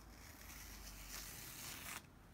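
An adhesive chalk transfer stencil being peeled off a painted wooden board, making a faint peeling, tearing hiss that grows a little louder about a second in.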